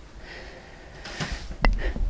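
A woven basket being handled and pulled out of a cube shelf: a low bumping rumble with a single sharp click late on.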